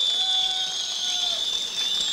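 Audience applauding, with a long, steady high-pitched whistle running through the clapping.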